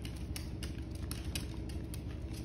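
Miniature dachshund gnawing a chew bone: irregular sharp clicks of teeth on the bone, several a second, over a low steady hum.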